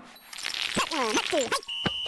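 Cartoon soundtrack: a character's voice speaking briefly, preceded by a short hiss, and a short high-pitched steady tone with a click near the end.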